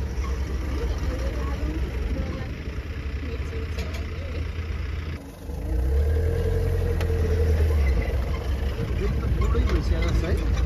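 Safari jeep engine running with a low steady rumble, dipping briefly about five seconds in and then louder for a couple of seconds.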